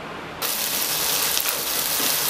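Chopped onion and tomato with spices frying in oil in a stainless steel pan, sizzling as a steady hiss that starts suddenly about half a second in.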